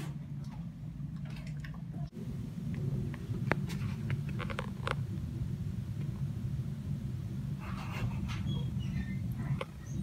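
Low, steady indoor hum of room noise, with a few faint clicks and some faint scattered sounds near the end.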